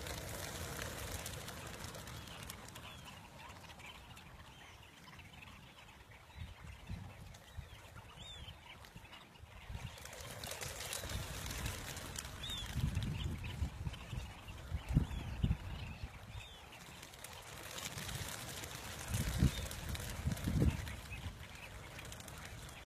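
Sandgrouse calling: many short chirping calls scattered through, with bursts of low rumbling noise around the middle and near the end.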